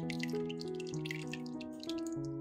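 Beaten egg mixture with chopped herbs pouring from a bowl onto bread slices in a pan, with many small wet splashes and drips. Keyboard music with held notes plays underneath.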